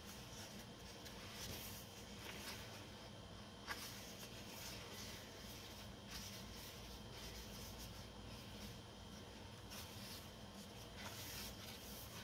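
Faint rustling of paper as the pages of a sticker book are handled and turned, with one small tap a little under four seconds in.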